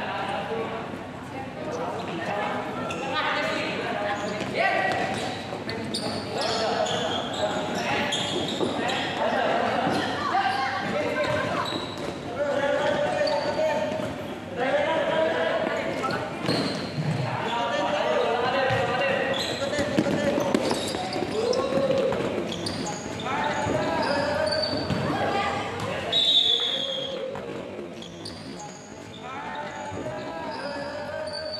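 Players and onlookers shouting during a futsal match in a large hall, with the hollow thuds of the ball being kicked and bouncing on the hard court.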